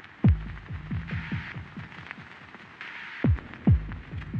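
Dark, low background score of deep booms that each drop in pitch. The loudest is one boom just after the start and a heartbeat-like pair near the end, with soft swells of hiss in between.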